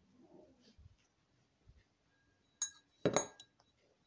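Dishes or glassware clinking: a sharp ringing clink past the middle, then a louder clatter just after.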